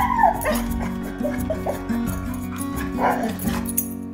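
Boxer–English bulldog mix whining and giving short yips and barks, worked up at a ball stuck under a TV stand; the first call bends down in pitch. Background music runs underneath.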